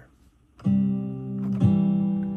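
Sampled Martin D-41 acoustic guitar from a virtual instrument plugin playing a strummed C chord: it starts about half a second in, is struck again about a second later, and rings on.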